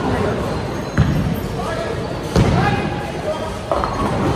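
Bowling alley din: heavy bowling balls thudding onto wooden lanes, with a sharp thud about a second in, another a little past halfway and a smaller one near the end, over the chatter of many voices in a large hall.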